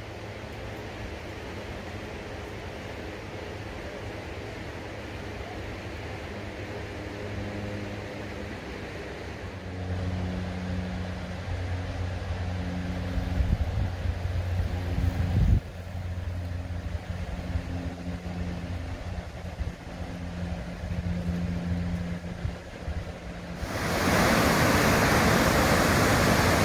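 Steady rush of the Deschutes River rapids, fairly faint at first, with a low hum that comes and goes through the middle. About two seconds before the end it switches abruptly to the loud, close rush of the whitewater.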